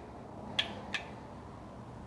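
Two short, sharp clicks about a third of a second apart, a little over half a second in: an Atlas Orthogonal adjusting instrument firing its percussive stylus against the upper neck in an upper-cervical adjustment.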